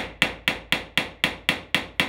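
Hammer striking the end of a cross-head screwdriver set in a rusted-in hinge screw: a rapid, even series of hard blows, about four a second. The blows seat the bit firmly in the screw head and break the rust loose before it is unscrewed.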